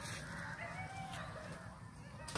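Faint distant bird calls, a few short pitched cries, over quiet outdoor background noise.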